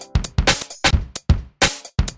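Electronic chillstep/drum-and-bass track at a stripped-back drum passage: choppy programmed kick and snare hits with almost no melody underneath.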